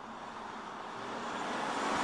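BMW M340i with its three-litre inline six driving toward the camera, its engine and tyre noise growing steadily louder.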